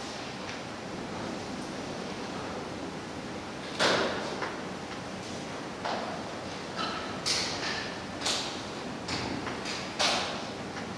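Steady hall background noise broken by a handful of sharp knocks and scrapes as string players set up at music stands and handle their instruments on stage. The loudest knock comes about four seconds in, and several smaller ones follow over the last four seconds.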